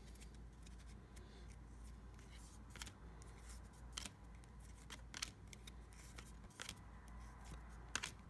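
Faint clicks and snaps of a stack of baseball trading cards being slid and flipped through by hand, a few sharper ones a second or so apart, over a low steady hum.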